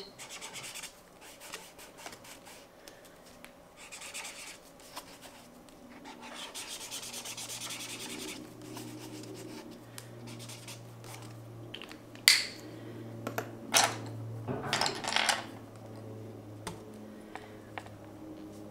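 A watercolor marker's tip and then fingertips rubbing and scribbling over sketchbook paper as the colour is laid on and smudged. A few sharp clicks come in the second half.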